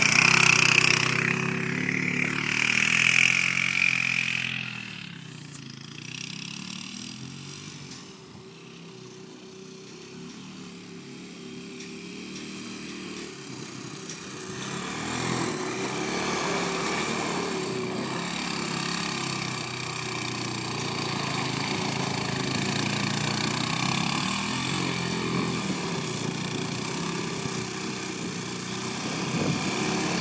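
Kawasaki Bayou 250 ATV's single-cylinder four-stroke engine revving up and down as it is ridden. It is loud for the first few seconds, falls quieter from about five seconds in, and grows louder again from about fifteen seconds in.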